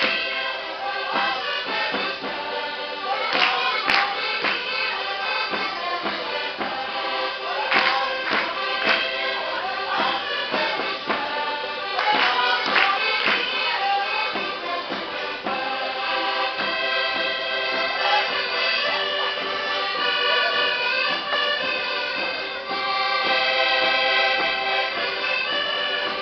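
Live Portuguese folk-dance music led by an accordion with string instruments and some singing voices. In the first half, groups of sharp claps recur every four or five seconds; the second half is steadier instrumental playing.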